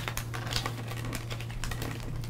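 Tarot cards being picked up from a wooden table and squared into a stack in the hands: a quick run of light card clicks and taps.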